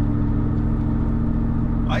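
Supercharged 5.4-litre V8 of a 2000 Ford F-150 SVT Lightning with side-exit exhaust, running at steady revs while driving, heard from inside the cab.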